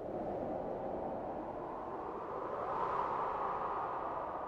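A steady rushing noise, with no clear pitch or beat, that swells slightly about three seconds in.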